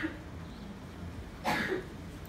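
A man coughing: one short cough right at the start and another about one and a half seconds in, over a low steady room hum.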